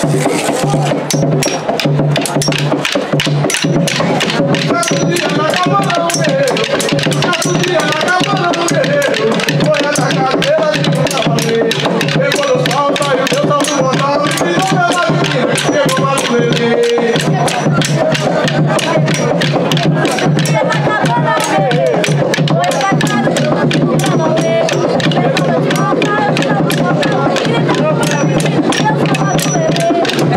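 Percussion music with a fast, dense clatter of strikes and voices singing or chanting over it.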